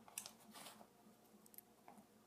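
Near silence with a few faint clicks and scrapes of handling as nylon-jaw pliers are brought onto the prongs of a silver ring.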